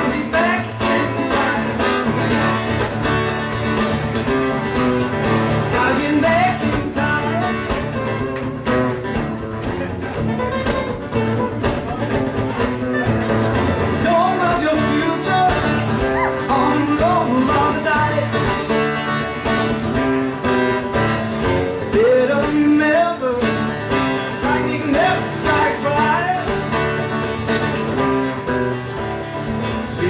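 Live guitar music: a continuous guitar accompaniment with sliding melodic lines over it, performed by a looping acoustic guitarist.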